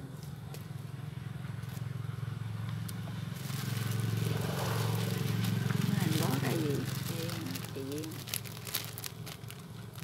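A vehicle engine hum that grows louder to a peak about halfway through and then fades, as of a vehicle passing nearby. Light crackling of a plastic bag being handled in the second half.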